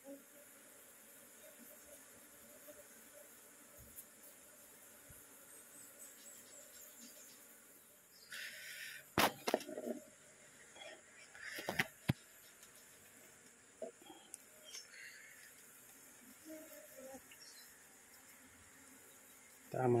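Asian honey bees (Apis cerana) humming faintly and steadily. About nine and twelve seconds in come a few sharp knocks and scrapes as a plastic bowl scoops clustered bees off the inside of a wooden hive box.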